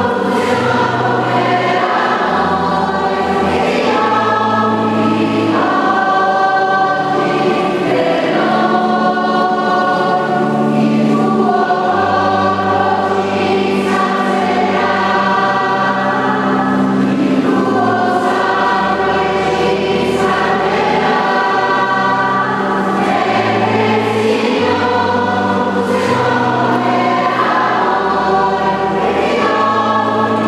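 Church choir singing a communion hymn during Mass, over an accompaniment that holds long, steady low bass notes changing every second or two.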